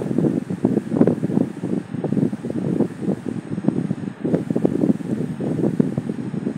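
Irregular low rumbling and rustling noise on a phone microphone, rising and falling in uneven gusts, with no clear voice or machine tone.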